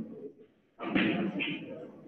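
Pool balls knocking and clattering together as they are gathered into the rack, loudest in a sudden burst about a second in.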